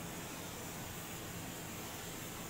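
Faint, steady background hiss of shop room tone, with no distinct sound events.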